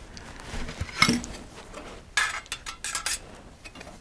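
Thin titanium panels of a Keith titanium folding wood stove clinking and tapping against each other as the stove is turned upright and its plate refitted. It is a loose scatter of light metallic clicks, busiest in the second half.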